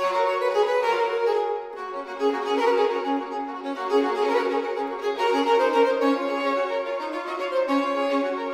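Baroque chamber duet without a bass line, led by violin, playing a fast, lively movement in short detached notes.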